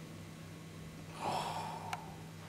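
Quiet room with a steady low hum; a little over a second in, a man lets out a short audible breath, followed by a faint click.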